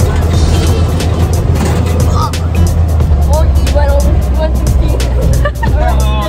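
Steady low rumble of an open off-road UTV's engine and wind noise on a dirt track, under background music with a beat, with a few short bursts of voices and laughter.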